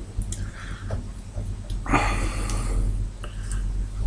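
Hands handling a vape tank and a needle-tipped e-liquid bottle, with a few small clicks and a low handling rumble. Two breaths through the nose, the louder one about halfway through.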